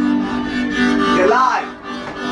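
Harmonica played cupped against a handheld microphone: held low notes, with a note sliding up and back down about halfway through.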